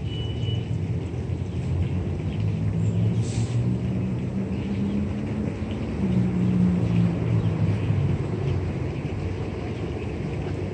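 Street traffic: the engine of a large vehicle running with a low drone whose pitch shifts about six seconds in, loudest between about six and eight seconds in. A brief hiss about three seconds in.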